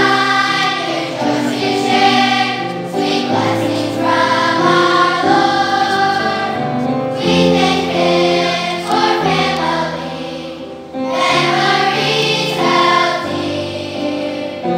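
A large children's choir singing a song in long, held phrases, with low sustained notes underneath and a short breath between phrases shortly before the end.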